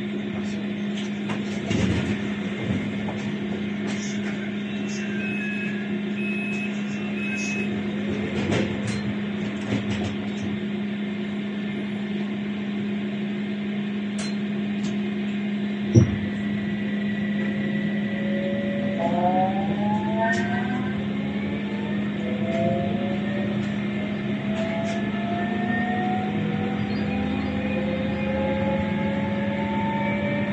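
Electric tram standing at a stop with a steady electrical hum; three short beeps sound a few seconds in and a sharp knock about halfway. Then the traction motors whine in several rising tones as the tram pulls away.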